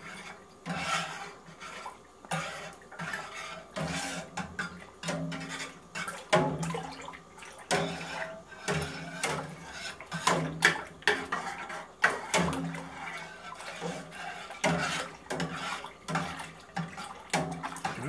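A long-handled metal spoon stirring milk in a stainless steel pot. It makes many irregular clinks and scrapes against the pot, with the liquid swishing as yogurt starter is stirred in.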